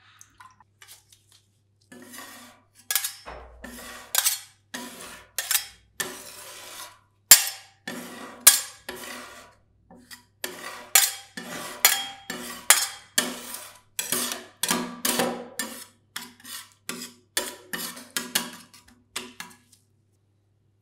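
Two flat steel spatulas chopping and scraping freezing orange soda on the cold steel plate of an ice-cream-roll pan: a run of sharp metallic clacks and scrapes, about one or two a second, starting about two seconds in.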